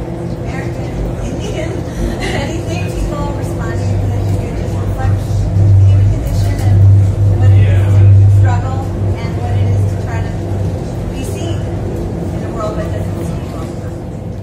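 Indistinct, muffled speech at a microphone in a noisy crowded room, with background music and a steady low hum that swells loudest through the middle.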